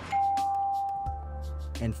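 A single bell-like chime strikes about a tenth of a second in and holds one clear tone for about a second before fading, over background music with steady low bass notes.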